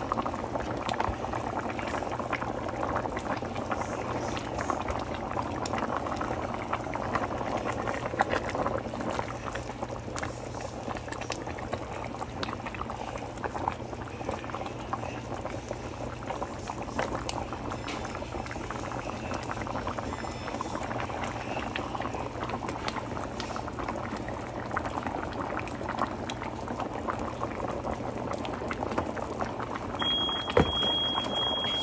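A pot of fish-and-greens soup boiling steadily on the stove, a dense stream of small bubbling pops, with a steady low hum underneath.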